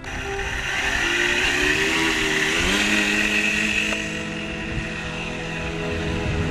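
Engine of a Hangar 9 60-size Sopwith Camel radio-control model biplane opening up for takeoff. Its pitch rises over the first few seconds, then holds as a steady full-throttle drone while the model lifts off and climbs.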